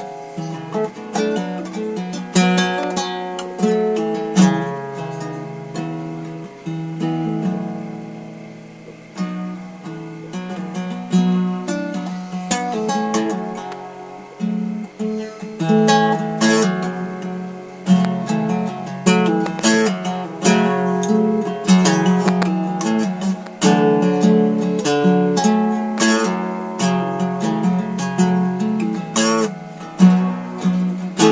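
Acoustic guitar played solo, chords strummed and picked in a steady rhythm, each stroke ringing and dying away over a low bass line.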